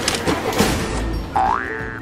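Cartoon sound effects over children's background music: a rushing whoosh through the first second, then a single rising boing-like pitch glide near the end.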